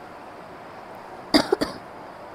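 A person coughing, a quick cluster of two or three short, sharp coughs about a second and a half in, over a low steady room background.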